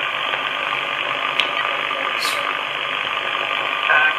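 HF single-sideband radio reception from an R-390A receiver with CV157 SSB adaptor: steady static hiss from the monitor loudspeaker, with weak aircraft voice traffic barely showing under it. The heavy noise is what the operator puts down to poor midday propagation conditions.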